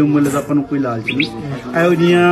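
A man speaking Punjabi in a monologue, his voice rising and falling in pitch.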